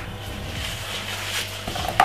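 Steady low hum under quiet room noise, with no distinct event.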